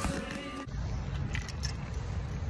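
Background music for the first moment, cut off abruptly. Then a low, steady outdoor rumble on the microphone with a few faint clicks.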